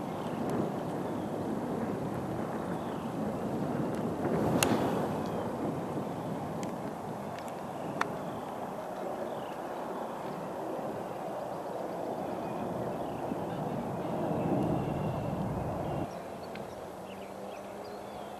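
A golf club striking the ball off the tee about four and a half seconds in, a single sharp crack, over steady wind noise on the microphone. A smaller sharp click follows at about eight seconds.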